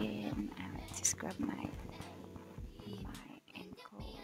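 Soft background music with a quiet vocal line, over the faint rubbing of an exfoliating glove on soapy skin.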